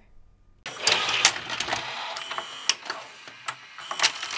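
Retro analog-video sound effect: a hissing, crackling noise full of rapid clicks and mechanical clatter, starting about half a second in after a brief silence.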